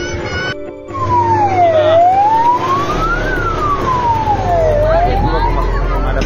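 Fire engine siren wailing, its pitch sliding slowly up and down about every three seconds, with a low steady hum underneath. It starts just under a second in, after a brief break in the sound.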